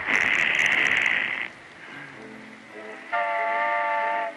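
Early sound-cartoon soundtrack: a hiss lasting about a second and a half, then a quieter stretch of soft music, then a held chord of several steady notes from about three seconds in.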